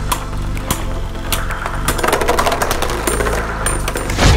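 Beyblade Burst spinning tops clashing in a plastic stadium: a string of sharp clicks about every half second, then a denser rattling scrape in the second half as one top bursts apart. Background music plays underneath.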